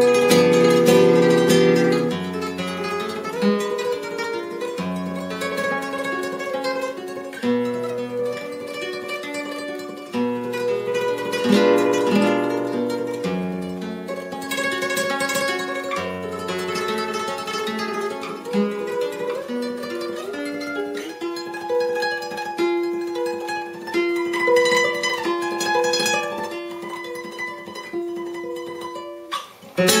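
Solo flamenco guitar with a capo playing a granaína: plucked melodic runs and ringing chords in free time. The playing stops shortly before the end.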